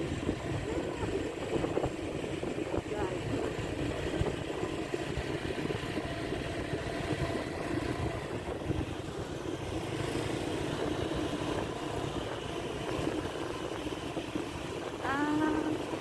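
Steady engine and road rumble of a moving vehicle, heard from on board.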